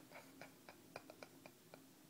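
A quick run of faint clicks, about four a second: a cat's claws catching and letting go in the fabric of a plush toy as it kneads it with its front paws.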